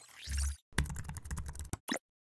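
Computer keyboard typing sound effect: a rapid run of key clicks lasting about a second, opened by a short swoosh with a low thud and closed by a single click.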